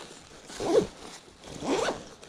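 A zipper on a North Face backpack being pulled, in two quick strokes about a second apart.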